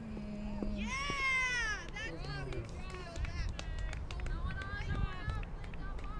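Players and spectators shouting and calling out during a live softball play, with one long, shrill shout about a second in and more calls after it. Short, sharp clicks are scattered through the second half.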